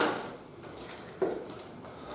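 Hands handling a large book on a wooden lectern, with a sudden knock about a second in.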